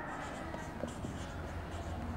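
Faint scratching of a pen drawing on a writing surface, with a couple of light ticks, over a steady low hum.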